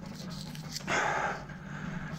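A single short breathy sound, about half a second long, a little under a second in, over faint room tone.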